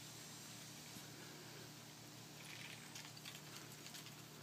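Near silence: faint outdoor background with a low steady hum and a few faint, short high ticks in the last second or so.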